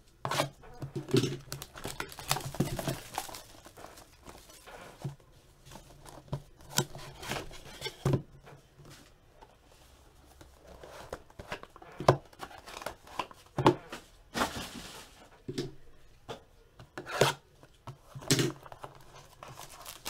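A Triple Threads football card box being opened and its cards handled: packaging tearing and crinkling, with scattered sharp taps and clicks of cardboard and cards. There is a longer stretch of rustling about two-thirds of the way through.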